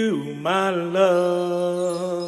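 A male singer's voice, unaccompanied. A short bending phrase gives way, about half a second in, to one long held note with a slight vibrato that slowly fades.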